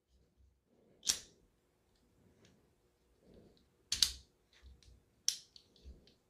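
Sharp clicks from a 1:3-scale all-metal die-cast miniature 1911 pistol being handled. There is one click about a second in, a double click about four seconds in and another a little after five seconds, with faint ticks between.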